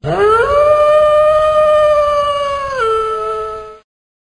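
Wolf howling: one long call that rises in pitch at the start, holds steady, then drops lower near the end before cutting off.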